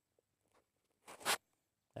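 Near silence, then about a second in one brief rasping scrape of a steel trowel on mortar and concrete block.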